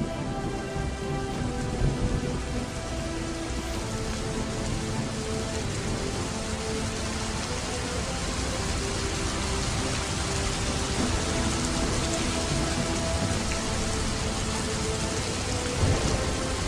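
Background music of slow held tones over a steady rain-and-thunder ambience, with louder swells about two seconds in and near the end.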